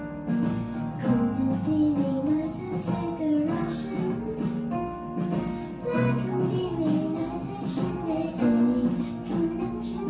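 A young girl singing a Thai pop song into a handheld microphone, her voice carrying a flowing melody over guitar accompaniment.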